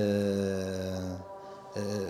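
A man's voice holding one long, level hesitation sound, a drawn-out "ehhh", for just over a second, then a brief pause before he speaks again.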